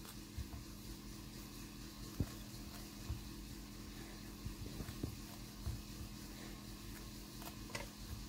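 Quiet steady room hum with a few soft taps and knocks, the clearest about two seconds in, as a clear acrylic block is pressed against a polymer clay cane to square it up.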